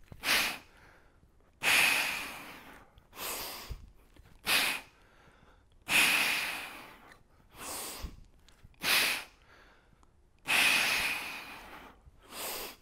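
A man breathing hard in time with a heavy kettlebell clean and press, inhaling as the bell comes down to pressurise his core. A short sharp breath is followed by a longer one that trails off, three times over.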